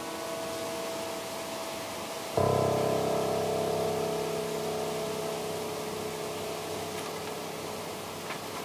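Piano chord from before still dying away, then a fuller chord with low bass notes struck about two and a half seconds in, left to ring and slowly fade.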